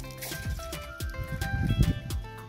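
Background music with a regular drum beat, deep bass hits and sustained melodic notes, the bass loudest in the second half.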